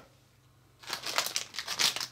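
Clear plastic candy packaging being picked up and handled, a quick run of crinkles and crackles starting about a second in.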